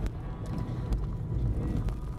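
Car cabin rumble from driving over a rough, broken concrete-slab road, with three sharp knocks about a second apart as the wheels jolt over the slab joints.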